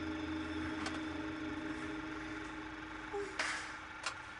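A steady low electrical hum with one sustained tone, fading slightly, and a short hissing burst about three and a half seconds in.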